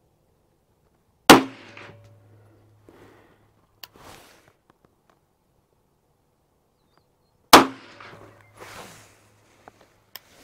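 Two pistol shots about six seconds apart from an HK VP9 9mm firing 70-grain Underwood Hero rounds, a very fast 9mm load. Each shot is sharp and followed by a trailing echo.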